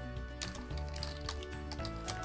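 Background music with held notes, and a few computer keyboard keystrokes clicking over it as words are typed.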